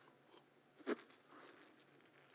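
Quiet room tone with one short, sharp click about a second in.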